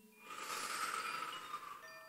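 Koshi chime swirled: a soft shimmering rush, then several clear, steady chime tones starting near the end and ringing on.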